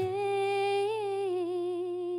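A woman's voice holding one long sung note, with a small lift in pitch about a second in, over a low steady note underneath.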